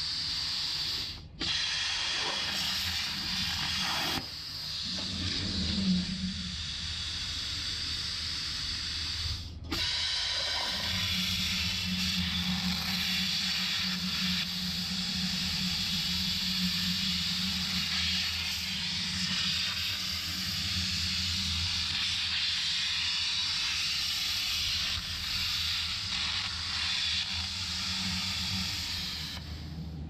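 CNC plasma torch cutting steel plate: a steady hiss from the plasma arc, broken by two brief dropouts, about a second in and near ten seconds. From about ten seconds on there is a low hum under the hiss.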